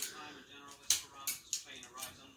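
Three short, sharp clicks in quick succession, with faint voices in the room.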